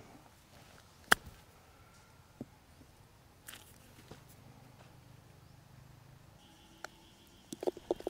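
A single sharp click about a second in, then quiet outdoor background with a few fainter ticks.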